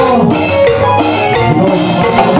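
Live cumbia band playing loudly: drum kit and percussion keeping a steady beat under accordion and keyboard.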